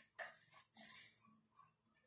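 Faint rustle of a paper sheet being turned over and laid flat on the notebook: a short tap about a fifth of a second in, then a soft hiss of paper about a second in.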